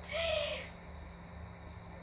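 A woman's short breathy voiced exhale, a single hoot-like note about half a second long just after the start, followed by a faint steady low hum.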